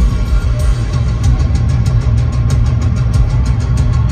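Metal band playing live and loud: distorted electric guitars, heavy bass and drums, with a fast, evenly spaced run of cymbal hits from about a second in.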